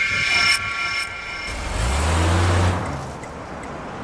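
Car engine running, its low hum swelling for about a second in the middle over a steady noisy background.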